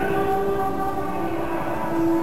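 Pre-recorded church organ music playing held, sustained chords.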